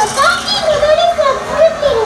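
A high-pitched, child-like voice speaking in continuous phrases.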